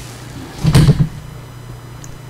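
A single brief, muffled bump close to the microphone, lasting about a third of a second a little under a second in, over a steady low hum.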